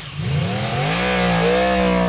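An engine revving: its pitch climbs through the first second, then holds at a high steady speed, over a rushing noise.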